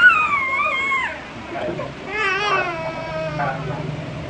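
A toddler crying hard during a haircut: a long high-pitched wail in the first second, then a second wail about two seconds in.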